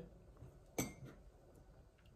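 A single light clink with a brief ring, a little under a second in: a ceramic mug picked up off a hard surface. Otherwise quiet room tone.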